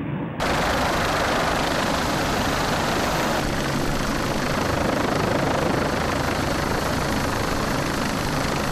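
Steady rushing noise of a camera helicopter and wind, cutting in abruptly under half a second in.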